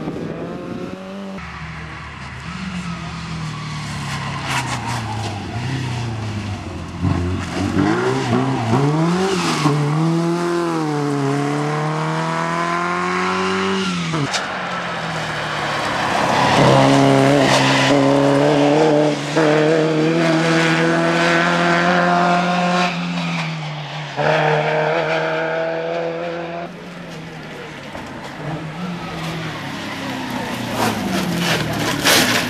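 Rear-engined Škoda saloon rally car driven hard on a stage: the engine revs up in several rising sweeps through the gears, holds high revs through the middle, then drops suddenly about three-quarters of the way in as the driver lifts off, with lower revs to the end.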